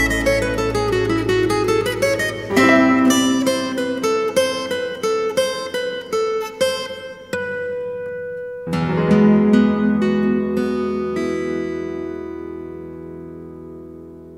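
Acoustic guitar playing a quick run of plucked single notes, then a final chord struck about nine seconds in that rings on and slowly fades away.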